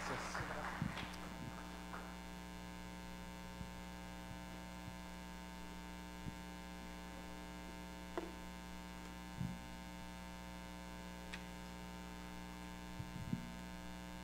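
Steady electrical mains hum, a stack of even tones, with a few faint knocks scattered through it. The last of a round of applause dies away in the first second.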